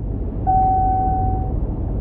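Low, steady vehicle rumble, with a single steady tone held for about a second starting half a second in.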